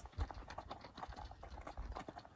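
Faint, irregular crunching clicks of a mule's hooves walking on gravel.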